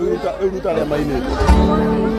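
Crowd chatter and voices, then about one and a half seconds in a single amplified instrument chord is struck with a low thump and rings on steadily.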